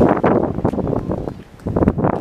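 Wind buffeting the microphone in irregular gusts, with a dip in the middle.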